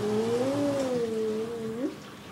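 A woman's long closed-mouth hum, 'mmm', held for almost two seconds. Its pitch rises a little, sinks slowly, and flicks up at the end.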